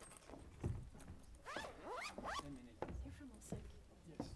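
Faint, indistinct off-microphone chatter mixed with handling noise near the table microphones: rustling and scraping, with a couple of soft knocks.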